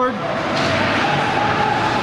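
Steady background noise of an indoor ice rink during play: an even hiss and rumble with a faint steady tone under it.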